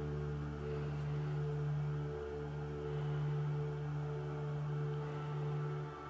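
Ambient background music of sustained low drone tones, with a short dip about two seconds in.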